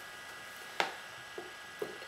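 Quiet room tone with a few soft clicks from a clear plastic toy package being handled, the clearest just under a second in.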